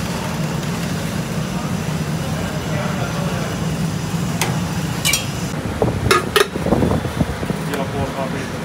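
Steady low hum of a busy coffee stall. In the second half, a few sharp metal clinks, two of them close together, as a spoon taps against condensed-milk tins and cups.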